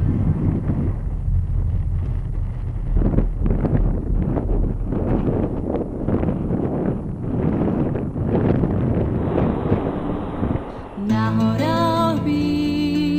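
Wind buffeting the camera microphone in uneven gusts. Music comes back in about a second before the end.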